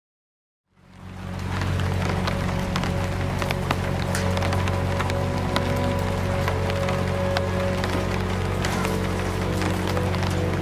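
Silence for under a second, then rain fades in: a steady patter of drops with many sharp clicks, over a low, steady music drone.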